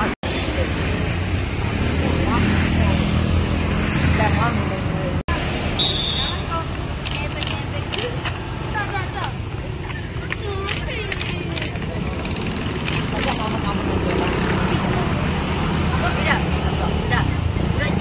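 Roadside traffic: motorbikes and scooters passing steadily, mixed with young people's voices talking and calling indistinctly. The sound drops out for an instant twice, near the start and about five seconds in.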